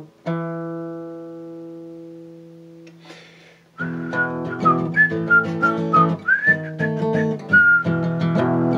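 Steel-string acoustic guitar: one strummed chord rings out and fades. From about four seconds in, steady rhythmic strumming starts with a whistled melody over it, its pitch sliding between notes.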